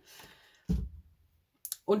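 A single short, dull knock about two-thirds of a second in, like something being set down or bumped on a table.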